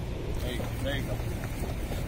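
Wind rumbling steadily on the microphone, with faint voices in the background.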